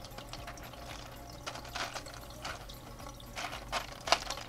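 Faint clicking and rattling of clay pebbles (hydroton) as fingers push them around a lettuce seedling's roots, over a quiet trickle of water running through the grow bed.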